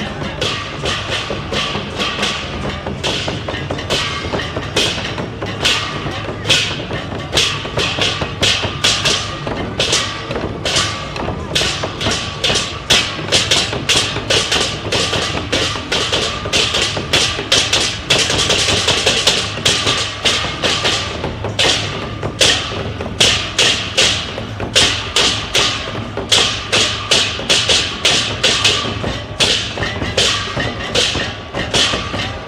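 Traditional Taiwanese temple-procession percussion: a large drum and other percussion struck in a steady, driving rhythm of about two to three strikes a second, accompanying dancing giant deity puppets.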